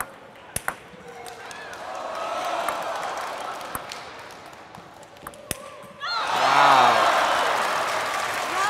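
Table tennis ball strikes during a rally: a few sharp clicks, spaced out. Over them, crowd voices swell and ease off. About six seconds in, the crowd breaks into loud cheering and clapping.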